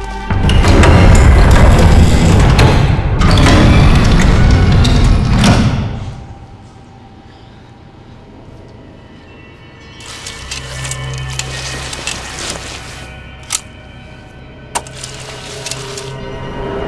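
Horror film soundtrack: a very loud, dense burst of score that lasts about six seconds and dies away, then a low steady drone with two sharp cracks near the end.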